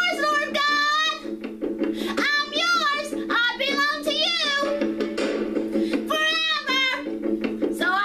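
A woman singing a Christian song in long phrases with a wavering, vibrato-like pitch, with short breaks between lines, over a steady instrumental backing.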